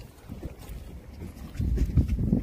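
Low rumble of a fishing boat with wind buffeting the phone's microphone, growing louder about a second and a half in.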